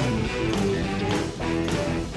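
Live rock band playing an instrumental passage: electric guitars over bass and drums with a steady beat.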